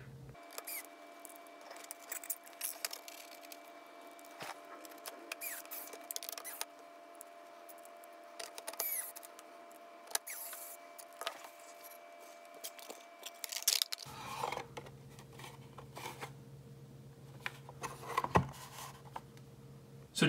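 Faint clicks, taps and scrapes of a circuit board being fitted into a 3D-printed plastic enclosure and its screws driven with a small precision screwdriver, scattered irregularly over a faint steady hum.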